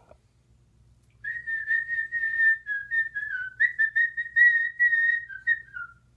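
A person whistling a string of short notes, mostly held at one pitch with a few brief dips, starting about a second in and stopping near the end.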